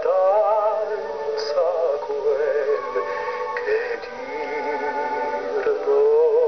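Operetta singing with a wide vibrato over musical accompaniment, heard through a television's speaker.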